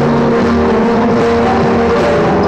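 Small acoustic band playing live: an accordion holds a steady chord over acoustic guitar and djembe.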